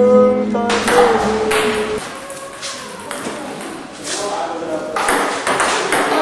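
Acoustic guitar playing for about the first two seconds, then a table tennis rally: the ball clicking off paddles and table while people talk.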